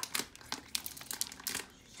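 Clear plastic protective film crinkling and crackling in a quick, irregular run as it is peeled off a computer, dying away shortly before the end.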